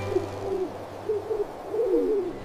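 A bird's low calls as a night-time cartoon sound effect: three short calls that each rise and fall in pitch, the last one longest.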